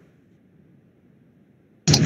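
Near silence: a pause in speech on the call, with a man's voice starting again just before the end.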